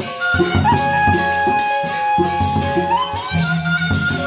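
Sasak gendang beleq ensemble playing: large barrel drums beat a busy rhythm under small cymbals, while a wind instrument holds a long note that slides upward about three seconds in.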